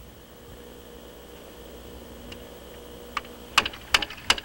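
A faint steady hum, then from about three seconds in a run of sharp knocks on wood, a few a second, from hand-tool work on a wooden sled.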